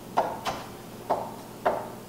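Santoku knife chopping through tomato pieces onto a wooden cutting board: three sharp knocks of the blade on the board, with a fainter one after the first.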